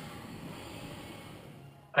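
One long, breathy rush of air, a person breathing out or in, that swells, holds and fades away near the end.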